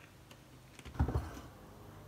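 Faint clicks of a plastic creamer bottle's cap being screwed shut, then a single short thump about a second in as the bottle is set down on the counter.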